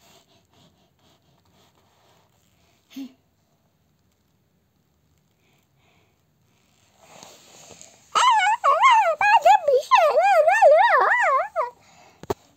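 A quiet stretch with one short soft thump about three seconds in, then a loud high-pitched warbling voice, most likely the girl's, wobbling rapidly up and down in pitch for about three and a half seconds, starting about eight seconds in.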